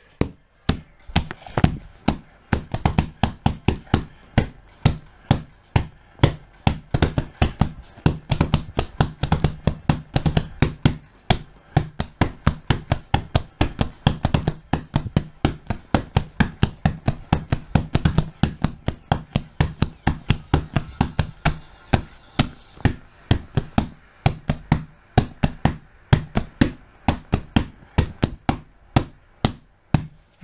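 Hands tapping and knocking on a surface close to the microphone, in a rough beat of about three knocks a second. A faint low steady tone sounds underneath through the middle of the stretch.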